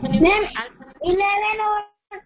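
A child's voice answering in a drawn-out, sing-song way over an online call, the last word held for about a second.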